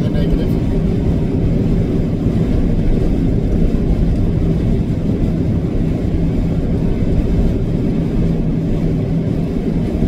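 Steady drone of a semi-truck's diesel engine and road noise heard inside the moving cab, with a constant low hum.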